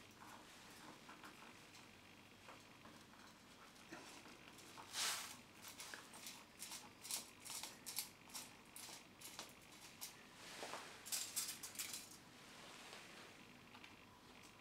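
Faint crinkling of aluminium foil and small scratchy clicks as a precision screwdriver is pressed through the foil into a stripped T5 Torx screw and turned, the foil filling the rounded-out head so the driver can grip. A louder crinkle comes about five seconds in, then runs of quick clicks and crackles.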